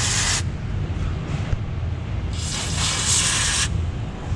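Aerosol can of white lithium grease spraying through its straw nozzle onto suspension joints and bushings, in hissing bursts: a short one at the start, a faint one about a second in, and a longer one of just over a second past the halfway point. A steady low rumble runs underneath.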